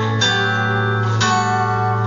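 Acoustic guitar strummed in an instrumental passage of a live country song, chords ringing, with fresh strums about a fifth of a second in and again about a second later.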